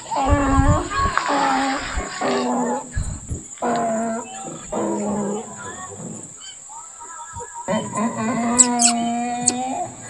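Wordless human vocal sounds: several short pitched calls in the first half, then one long drawn-out 'aah' held at a steady pitch near the end.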